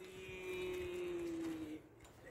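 A single held tone with a buzzy, overtone-rich quality lasts about a second and a half, sinking slightly in pitch, then cuts off abruptly near the end.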